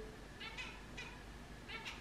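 Domestic cat meowing faintly, a few short calls.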